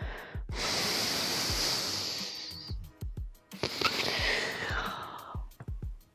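Two long, audible breaths through the mouth in a guided breathing exercise, each about two seconds long, with a short pause between them.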